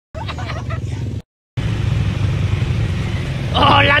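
A motor vehicle engine running with a steady low rumble, cut by two brief dropouts to total silence, near the start and about a second and a half in.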